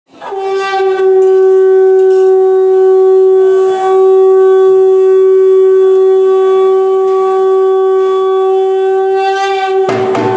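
Conch shell (shankh) blown in one long, steady note, with a brief dip a little under four seconds in.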